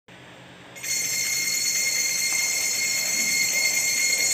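A steady high-pitched whine made of several unchanging tones, starting suddenly about a second in.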